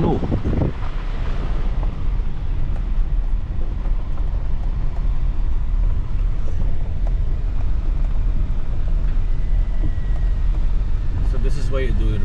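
Steady low rumble of a car driving along an unpaved gravel road, heard from inside the cabin: tyre, road and engine noise with some wind.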